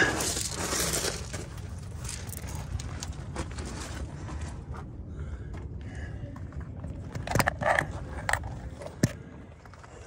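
Loose gravel crunching and scraping under someone kneeling and shifting down onto it, loudest at first, with a few sharp clicks of stones in the second half.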